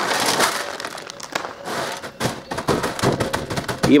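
Chopped walnuts poured from a plastic bag onto a metal baking tray: a dense rattle of pieces hitting the metal for about the first second, then scattered sharp ticks as the last pieces drop and settle, with the plastic bag crinkling.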